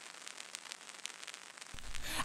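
Faint crackle with scattered clicks: vinyl record surface noise in the lead-in before a hip hop track starts. Near the end the bass of the track begins to come in.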